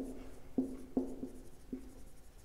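Marker pen writing on a whiteboard: a series of short, quiet strokes and taps as the letters are drawn.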